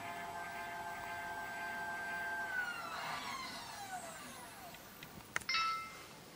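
Vixen AXD telescope mount's drive motors whining through a GoTo slew. The steady whine glides down in pitch from about halfway through as the mount slows onto its target, then stops. A click and a brief tone follow near the end.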